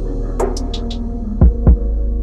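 Fireworks going off: a few sharp cracks in the first second, then two loud booms in quick succession past the middle. Underneath runs a steady low droning hum.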